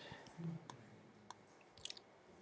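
Faint clicks of a computer mouse, a few spaced out, with two close together near the end, and a faint low sound about half a second in.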